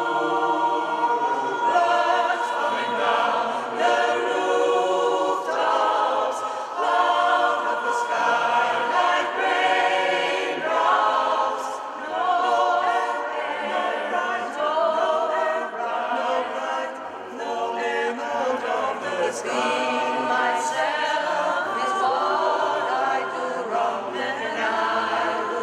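Mixed choir of men's and women's voices singing a cappella, several voices sounding together without pause.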